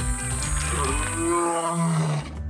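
Theme music ending on a big-cat roar that drops lower in pitch near the end, with a bright shimmer at the start.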